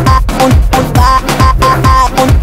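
Electronic dance music: a steady beat about twice a second over a low bass line that slides down in pitch again and again, with no singing.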